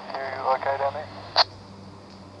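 A man's voice over a two-way radio for about a second, quieter than the pilot's own voice, then a short sharp high-pitched blip about one and a half seconds in.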